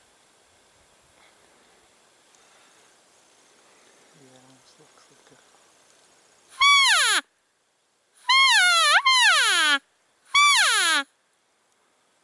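Elk cow call blown loudly by a hunter: three cow mews, each starting high and sliding down in pitch. The middle one is longer, with a hitch in its pitch. The calls imitate a cow elk to draw a bull in.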